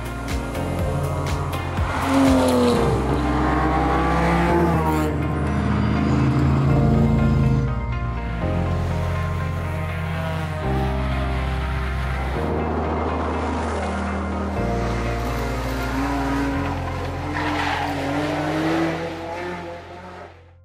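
Rally car engines revving hard as the cars accelerate past, mixed over background music with held low notes; the sound fades out near the end.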